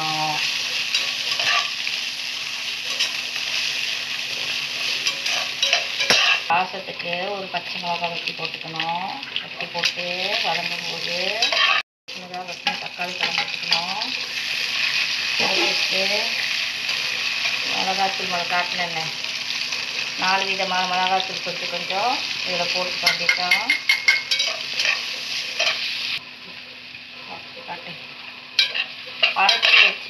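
Vegetables and onions sizzling as they fry in oil in a non-stick pan, stirred and turned with metal tongs. Short squeaky tones that rise and fall come and go over the steady sizzle. The frying drops quieter near the end.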